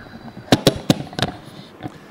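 Four sharp knocks in quick succession, close to the microphone, between about half a second and just over a second in, with a fainter one near the end: handling knocks at a conference table, picked up by its table microphone.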